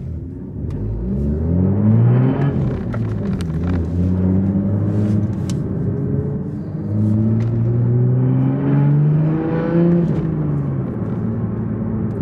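Manual-gearbox Toyota GR Supra's turbocharged 3.0-litre inline-six, heard from inside the cabin while accelerating through the gears. The engine note rises, drops at a gear change and rises again, then eases off near the end.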